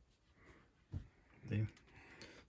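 A steam iron is set down on the ironing board with a single light knock about a second in, amid faint handling sounds. A woman says "okay" shortly after.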